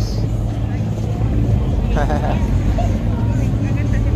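Low, steady engine rumble from a 1962 Chevrolet Impala SS lowrider creeping past at walking pace, with bystanders talking nearby.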